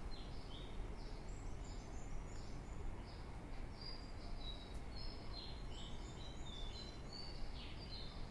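Night-time outdoor ambience: many short, high chirps overlapping over a steady low rumble.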